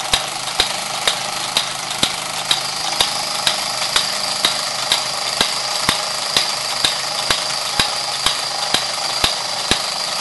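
Fleischmann 1213 toy overtype steam engine running under steam, belt-driving a line shaft and toy workshop models: a steady hiss with a thin high whine, and a sharp mechanical click about twice a second from the driven machinery.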